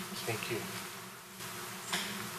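A steady electrical buzz with several evenly spaced hum tones, with faint voices away from the microphone about half a second in.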